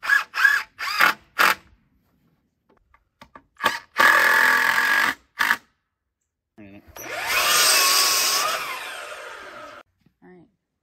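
Electric power tool running in short bursts: four quick ones at the start, a run of about a second midway, then a longer run of about three seconds that slowly winds down near the end.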